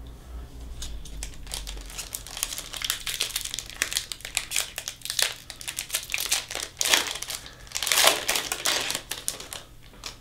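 Foil wrapper of a 2021 Donruss baseball card pack crinkling and tearing as it is ripped open by hand, a dense run of crackles that is loudest near the end.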